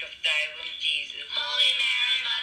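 A singing voice with background music, the notes held longer near the end.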